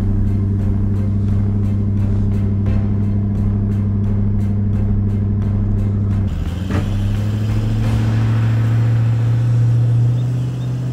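Toyota LandCruiser's diesel engine held at steady high revs under load while reversing a caravan through soft sand. About six seconds in the note dips briefly, then settles at a slightly higher steady pitch.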